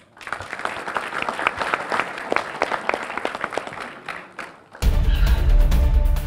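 An audience clapping, many hands together, thinning out about four seconds in. Then theme music cuts in suddenly, loud and with heavy bass.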